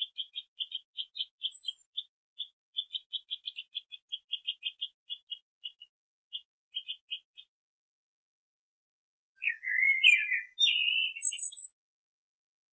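Bird chirping: a quick run of short, high chirps, about four or five a second, that slows and stops. After a short pause comes a louder, warbling phrase with sliding notes lasting about two seconds.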